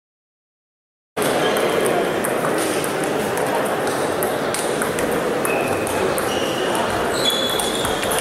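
Silent for about the first second, then celluloid table tennis balls ticking off rubber bats and table tops in quick, irregular succession across a big hall with many tables in play, over a steady murmur of voices.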